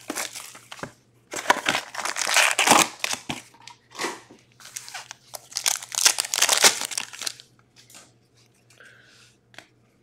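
Plastic shrink wrap crinkling and tearing in bursts as it is stripped off a sealed box of trading cards, then a card pack's wrapper being torn open about halfway through.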